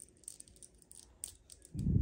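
Small plastic clicks and taps as fingers and fingernails handle a vinyl collectible figure and press a tiny plastic mask accessory onto it, with a low muffled thump near the end.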